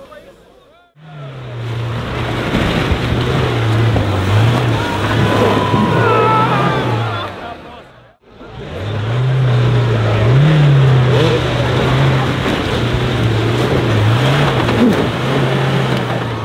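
Pickup truck's engine revving and labouring under load as the truck climbs out of a mud pit, its pitch rising and falling with the throttle. The sound drops out briefly about a second in and again about halfway through.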